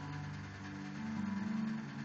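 Soft electronic keyboard chords, a few notes held steadily.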